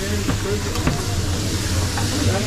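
Fried rice sizzling on a hot teppanyaki griddle, over a steady low hum.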